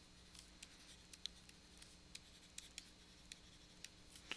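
Near silence with faint, scattered ticks and scratches of a stylus writing on a pen tablet, over a faint steady hum.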